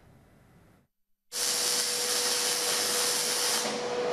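Paint spray gun hissing steadily as a large tower-clock dial is spray-coated, starting about a second and a half in after a short silence, with a steady hum underneath.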